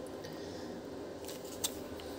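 Quiet room hiss with two faint clicks in the second half, the second sharper: a metal spoon tapping against a ceramic bowl of mayonnaise.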